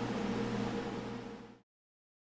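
Computer cooling fans running steadily: a low hum with a light whir from a running Ryzen 9 3900X rig, its AMD Wraith Prism CPU cooler fan spinning under mining load. The sound cuts off suddenly about one and a half seconds in.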